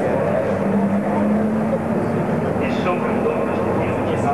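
Racing truck's diesel engine running past on the circuit, a steady engine note that holds for about a second and then merges into a constant wash of track noise.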